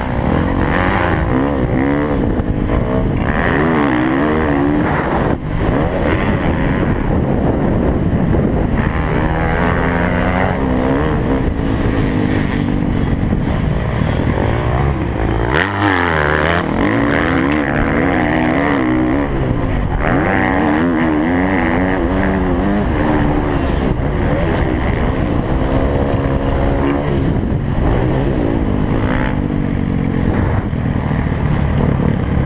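Dirt-bike engine heard from the riding motorcycle, revving up and down in pitch with the throttle as it is ridden around a motocross track, dropping off briefly about halfway through.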